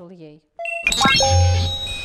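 Chiming transition sound effect: a short ding, then a rising swoosh with bell-like pings and held tones, going into background music over a low bass note.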